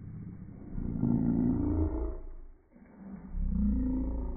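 Voices slowed down by slow-motion playback, deep and drawn out, with a pitch that bends up and down. There are two long stretches, the first starting about a second in and the second near the end.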